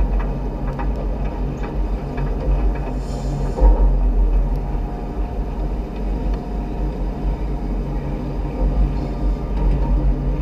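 Rhaetian Railway train running on metre-gauge track, heard from the driver's cab as a steady low rumble of the running gear with a faint hum. A brief louder bump with a hiss comes about three and a half seconds in.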